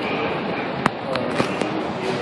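Four sharp clicks of pool balls striking one another, the first the loudest and the others close behind within about a second, over the murmur of voices in a pool hall.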